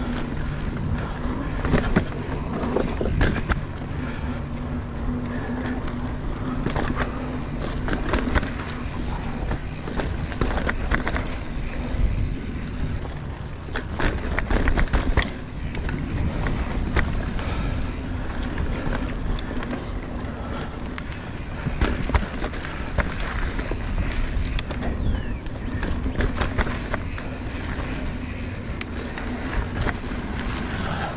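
Mountain bike rolling along dirt singletrack: steady tyre noise on the dirt, with frequent sharp clicks and rattles from the bike over bumps and roots.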